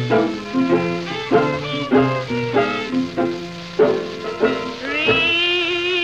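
Instrumental break of a 1928 country blues 78 rpm record: string accompaniment playing a run of plucked notes, then a long held note with vibrato near the end.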